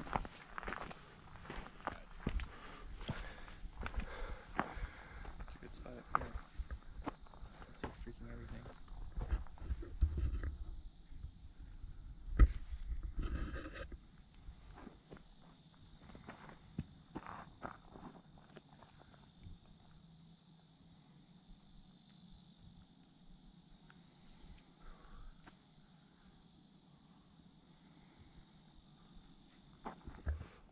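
Footsteps of a hiker on a dirt and rock trail, steady crunching steps for about the first fourteen seconds, with one sharp knock near the end of the walking. Then the steps stop and only faint steady high-pitched background hiss remains.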